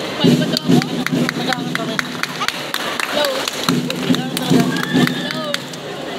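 Jazz chant performed by a group: voices chanting together in short loud bursts, with a run of sharp claps, a few a second, keeping the beat through them.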